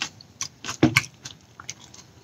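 A person eating from a plastic spoon and chewing, heard as a series of short clicks and smacks every few tenths of a second.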